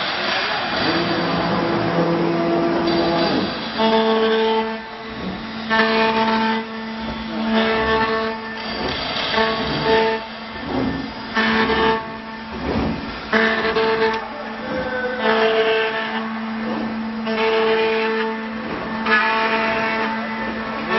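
ATC CNC router running: a steady machine sound with whining tones that come and go in short stretches every second or two, over a haze of cutting noise.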